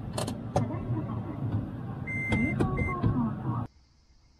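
Car heard from inside the cabin while parking: a steady low engine hum, a few clicks and two short electronic beeps about two seconds in. It cuts off abruptly near the end into a much quieter background.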